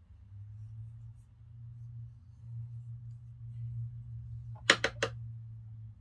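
Three quick, sharp clicks close together near the end, from a metal trimming tool working on a clay wine-glass stem, over a steady low hum.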